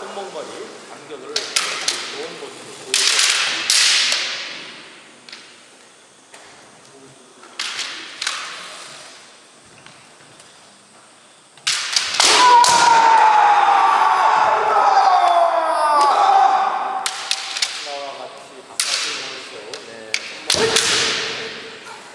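Kendo sparring: sharp cracks of bamboo shinai strikes and stamping feet on a wooden floor, echoing through a large hall. Halfway through come long, loud kiai shouts that fall in pitch.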